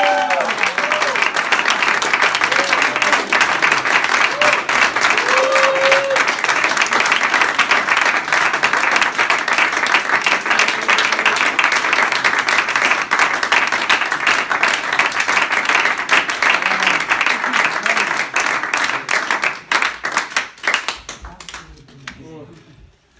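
A small audience applauding steadily, with a few shouted cheers in the first seconds; the clapping thins out to scattered claps and stops about a second before the end.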